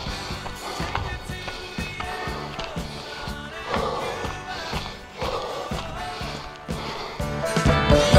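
Background music with a steady beat, getting louder near the end.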